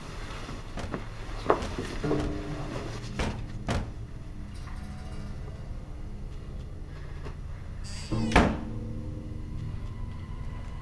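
A door slamming shut with a loud bang about eight seconds in, after a few softer knocks earlier on, over steady low music.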